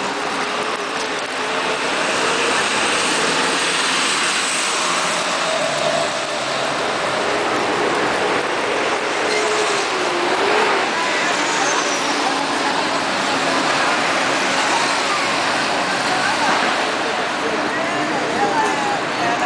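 Busy city street ambience: a steady wash of traffic noise with scattered voices of passers-by.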